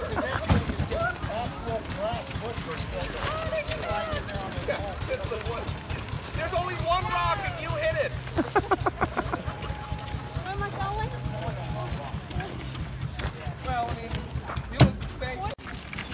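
People talking in the background over a low steady hum, with a quick run of pulses about eight seconds in and a sharp click near the end.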